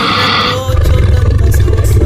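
A deep, rough roar sound effect, lion-like, used as a transition in a DJ mix. It follows a brief hissing sweep and runs for about the last one and a half seconds.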